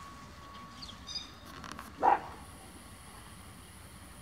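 A dog barks once, a single short bark about halfway through, the loudest sound here. Faint high chirps come just before it.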